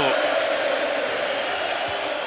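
Football stadium crowd noise: a steady roar of thousands of supporters in the stands.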